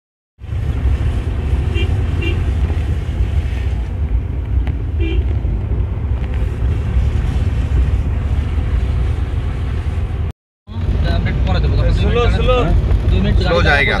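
Steady low rumble of a vehicle's engine and tyres on a wet road, heard from a moving vehicle, broken by a brief dropout just past ten seconds in. Voices talk over it near the end.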